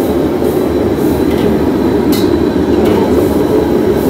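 A commercial gas wok burner running with a loud steady rush under a wok of sizzling chilies, with a long metal wok spatula scraping against the wok a few times.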